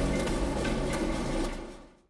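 Tunnel muck conveyor running: a steady low machine hum with a fast, even mechanical clatter. It fades out over the last half second.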